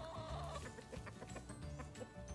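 Chickens clucking, with a drawn-out wavering call that fades out about half a second in, over background music with a repeating low beat.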